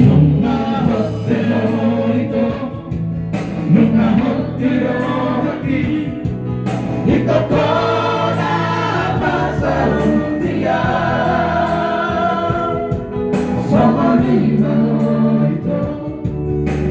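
Several men singing a song together through microphones and a loudspeaker, a loud group chorus over steady instrumental backing.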